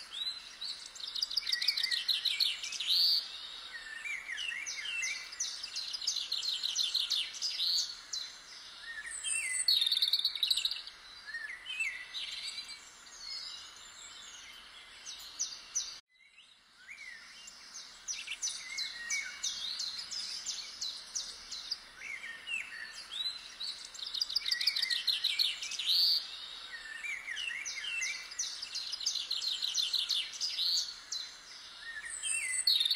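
Several songbirds singing, with fast chirping trills and short calls over faint outdoor background noise. The sound cuts off abruptly about halfway through and fades back in.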